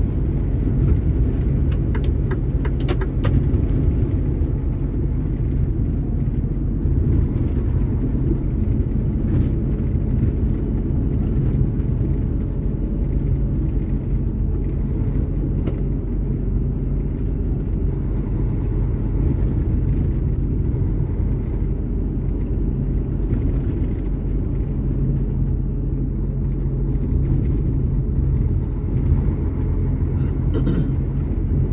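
Heavy truck's engine and tyre noise heard from inside the cab while cruising: a steady low rumble. A few light clicks come about two to three seconds in.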